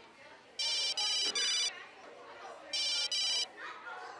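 Mobile phone ringtone signalling an incoming call: a high electronic trilling tone in two bursts, the first a little over a second long and the second shorter, then it stops.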